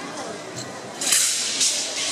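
Wushu broadsword (dao) cutting fast through the air, a sudden high swish about a second in and a second, smaller one about half a second later.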